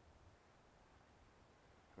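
Near silence: only a faint low background rumble.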